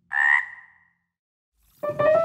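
A single short cartoon frog croak sound effect, about half a second long, right at the start. Near the end a keyboard jingle begins.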